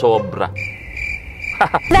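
Cricket chirping sound effect, a steady high trill lasting about a second and a half: the comic 'crickets' cue for an awkward silence after a joke.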